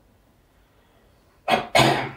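Near silence for about a second and a half, then two short, abrupt vocal bursts from a man near the end.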